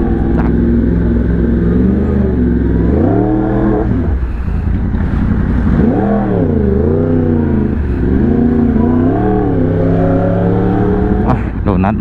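Yamaha R1M's crossplane inline-four engine running at low revs in slow traffic. It rises in pitch about three seconds in and drops back, then rises and falls in several short blips of the throttle through the middle of the stretch.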